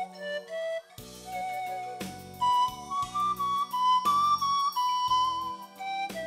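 Wooden pan flute playing a melody of held notes that step up and down, over an instrumental accompaniment with a bass line.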